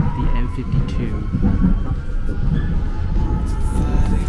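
Amsterdam metro train pulling out of a station and gathering speed: a steady low rumble of wheels on rail with a thin whine from the electric drive.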